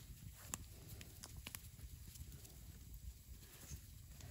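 Faint campfire crackling: a handful of scattered sharp pops over a low rumble.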